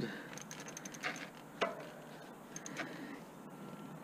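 Bicycle rear freewheel ticking as the rear wheel is spun by hand: a quick, even run of light clicks in the first second, then a few scattered clicks and knocks as the bike is handled.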